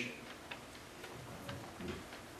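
A pause in a talk: quiet room tone with a few faint, soft clicks.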